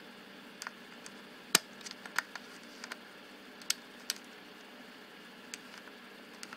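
Faint, scattered small clicks and taps, the loudest about one and a half seconds in, from a pen tip working the mirror and aperture-bar mechanism inside a Pentacon-built SLR camera body's lens mount. The mechanism is being worked by hand because the mirror does not return on its own and has to be moved manually.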